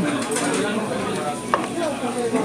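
Hard clicks and knocks of turban shells and small wooden serving trays being moved about on the table, the sharpest about one and a half seconds in, over background talk.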